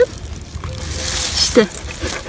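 A small hand adze digging into moist garden soil, scraping and turning it over with loose earth rustling as potatoes are lifted out. A short voice sound comes near the end.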